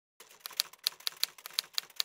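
Typewriter keystrokes used as a typing sound effect: a quick, uneven run of sharp clacks that starts just after the beginning.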